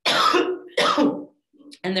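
A woman coughing twice in quick succession, two sharp, loud coughs.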